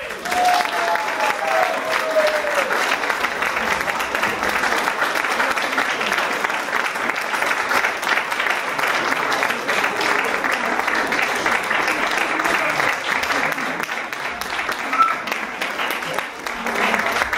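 Audience applauding steadily, with one voice briefly calling out about half a second in.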